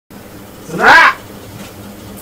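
A single loud, high-pitched cry about a second in, lasting about half a second. It rises steeply in pitch and then curves back down.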